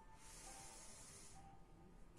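Near silence with one faint, soft breath hiss lasting a little over a second, from a woman breathing during a slow pilates breathing exercise.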